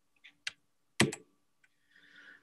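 Computer keys clicked a few times to advance a slide: one sharp click about half a second in, then two quick clicks about a second in, over a faint steady hum.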